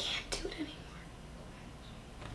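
A short, breathy, whispered vocal sound from a person at the very start, then quiet room tone with a low steady hum.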